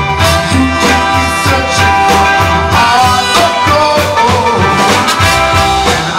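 Live soul band playing an instrumental passage with its horn section (trumpet, trombone and saxophone) over drums, bass and electric guitar.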